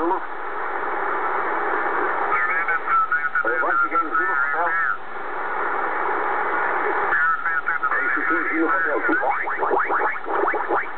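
Kenwood TS-690S receiver on 10-metre single sideband: a steady hiss of band noise with snatches of weak voices breaking through twice. Near the end the pitch of the signals sweeps as the tuning knob is turned.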